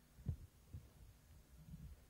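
Near silence broken by a few faint, deep thumps: one about a third of a second in, a weaker one just before the second mark, and a soft double bump near the end.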